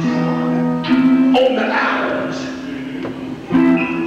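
Live church instrumental music: held chords with a guitar-like sound, changing about a second in and again near the end.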